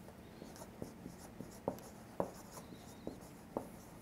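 Marker pen writing on a paper flip-chart pad: faint scratchy strokes, with a few light taps as the tip meets the paper.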